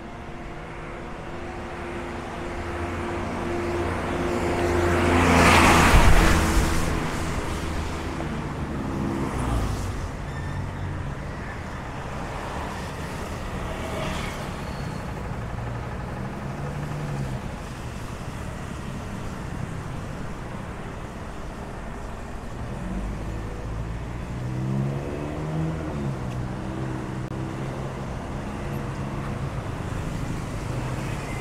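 Street traffic: engines running steadily, with one vehicle passing close and loud about six seconds in. Later, around 25 seconds in, an engine's pitch rises and falls as it speeds up and slows.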